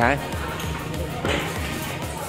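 Background music with a steady, evenly spaced bass beat, under the chatter of a busy restaurant.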